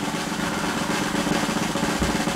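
Snare drum roll, fast and steady.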